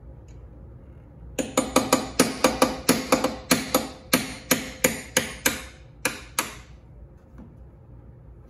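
Claw hammer tapping a brass punch against a C3 Corvette's hood-latch striker to nudge it into adjustment. It gives a rapid run of about twenty sharp metal taps, a few each second, over about five seconds, with a short break near the end.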